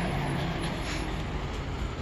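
A steady low mechanical hum over a constant rumble.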